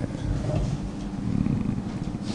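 A man's low, drawn-out hesitation murmur into a close microphone, rough and hum-like rather than clear words.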